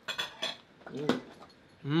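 Cutlery clinking against a dinner plate several times in quick succession, followed by a brief voice sound and an "mmm" of enjoyment near the end.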